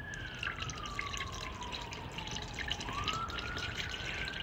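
Sea Foam engine treatment pouring from its bottle through a funnel into the engine's oil filler, trickling with small drips. A siren wails at the same time, its pitch sliding slowly down and then back up.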